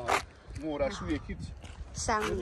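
A short, sharp rasp right at the start, then a person's voice speaking softly for about a second.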